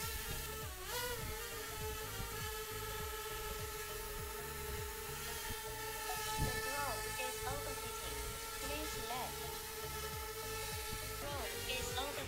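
Xiaomi MITU mini quadcopter hovering, its propellers giving a steady high whine that wavers in pitch about a second in. Near the end the whine stops as the drone sets itself down, having overheated.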